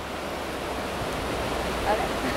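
Fast-flowing river water rushing steadily.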